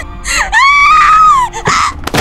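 A woman screaming in terror: one long, high scream of about a second that rises and falls, with shorter cries just before and after it, over music.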